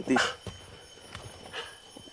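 A man's voice trailing off at the start, then low background sound with a faint click about a second in.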